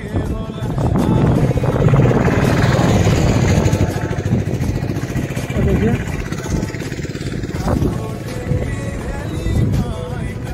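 A motor vehicle passing close by on the road, its engine and tyre rumble loudest about two seconds in and easing off over the following seconds.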